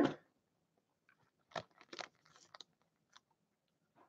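A few faint, short crinkles and taps from a foil card-pack wrapper and a stack of trading cards being handled, the clearest about a second and a half in and again about two seconds in.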